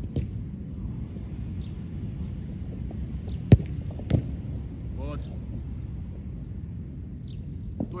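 A football struck hard once, a sharp crack about halfway through, then a second, softer thud about half a second later as the low shot reaches the diving goalkeeper. A steady low rumble runs underneath.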